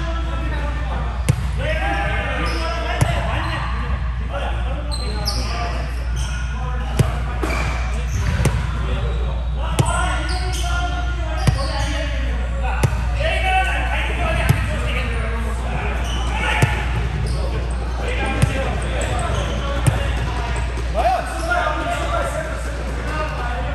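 Sharp smacks of a volleyball being hit and bounced on a hard gym floor, about a dozen of them a second or two apart, over players' background chatter.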